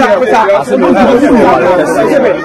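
Speech only: several voices talking over one another in lively chatter.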